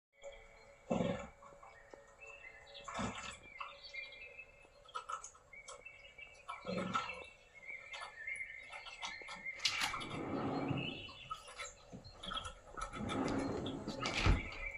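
Songbirds chirping on a television's soundtrack, with a few soft thuds about a second and three seconds in and longer rustling stretches near the end.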